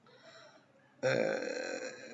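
A man's voice: a drawn-out 'aaah' hesitation held at one steady pitch for about a second, starting about a second in.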